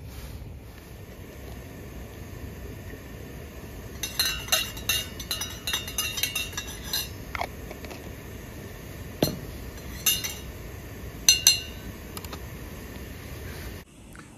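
Metal spoon clinking and tapping against a stainless steel mug while tea is made: a cluster of quick ringing clinks about four seconds in, then a few single clinks later, over a steady low rush.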